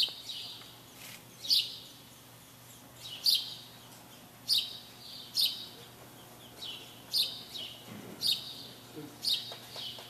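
A small bird chirping over and over: short, sharp, high chirps that drop in pitch, about one a second at irregular spacing.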